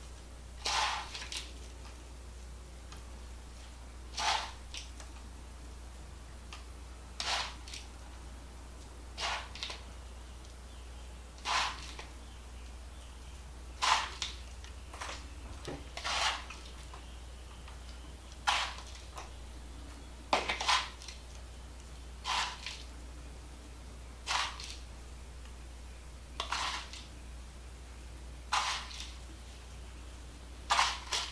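Crushed Ritz cracker crumbs being pinched from a plastic bowl and sprinkled by hand over a casserole: a short, crunchy rustle about every two seconds over a low steady hum.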